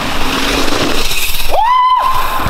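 Loud rushing noise as a mountain bike rolls fast down a dirt run-in toward a jump, like wind on the microphone and tyres on dirt; about one and a half seconds in, a high shout cuts in and holds as the rider takes off.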